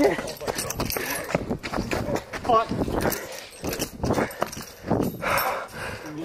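Running footsteps and phone-handling knocks close to the microphone, an irregular patter of thuds, with a short vocal cry about two and a half seconds in.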